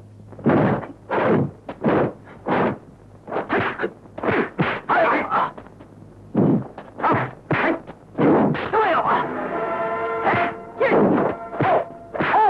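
Kung fu film fight sound effects: a quick run of dubbed punch and strike impacts with whooshes, interspersed with shouted fighting cries. Steady music tones come in under the blows in the second half.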